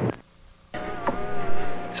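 A sudden drop to near silence, then, about three-quarters of a second in, a steady buzzing tone with several pitches holding for over a second.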